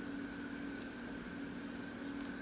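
Steady, faint room hum with a constant low tone and a fainter higher tone, and no distinct event.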